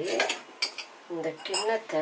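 Stainless steel kitchen utensils clinking: a spoon knocking against steel vessels, a few sharp clinks spread over two seconds.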